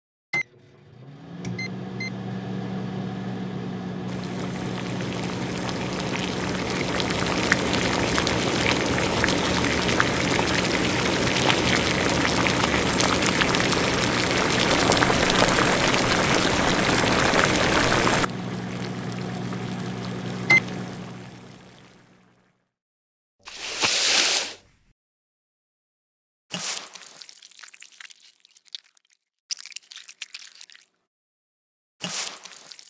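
An electric cooktop switched on: a click and short beeps, then a low electrical hum. Broth boils in the pot, the bubbling building for about fifteen seconds and then cutting off suddenly. After another beep the hum dies away, and near the end come short bursts of liquid being poured.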